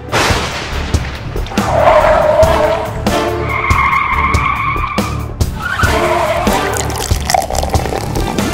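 Car tyres squealing round bends: three long screeches of a second or two each, over a steady low engine rumble, with music underneath.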